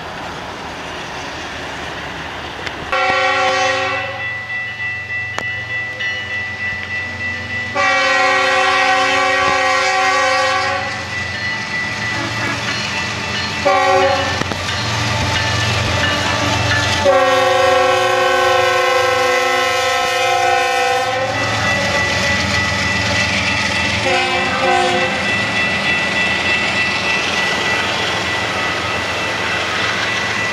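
Multi-chime air horn of a GE ES44AC diesel locomotive (CP 8740) sounding a series of blasts: long, long, short, long, then one more short. That is the standard grade-crossing signal. Under it the locomotive's diesel engine rumbles and the train's wheels click over the rail joints as it passes.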